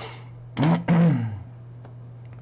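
A man clearing his throat loudly in two quick bursts, the second longer and falling in pitch.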